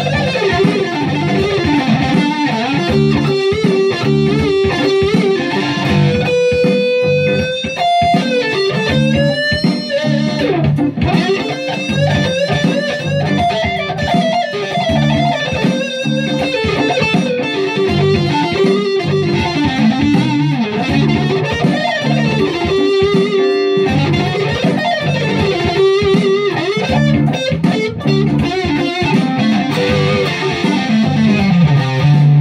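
Moxy Guitars KC Juniper electric guitar played with a pick in a continuous jam of riffs and single notes, with a held note about six seconds in followed by bent notes.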